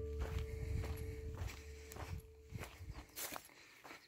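Footsteps walking over dry ground, heard as irregular soft crunches, while a held background music chord fades out about a second and a half in.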